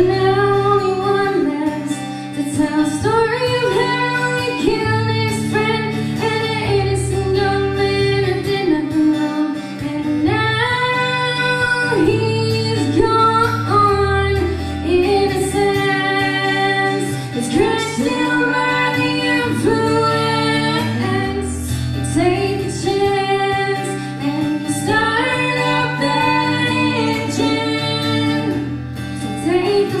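Live country song: a woman singing held, bending melody lines over a strummed acoustic guitar.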